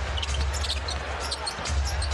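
Basketball dribbled on a hardwood court during live NBA play, with short sharp sounds of play over a steady low arena rumble.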